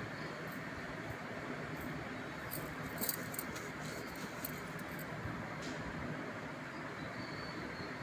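Thekua, wheat-flour dough cakes, deep-frying in hot oil in a kadhai: a steady sizzle of bubbling oil, with a few short clicks and crackles about three seconds in.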